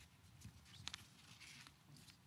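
Near silence: faint room tone with a few soft rustles and one small click about a second in.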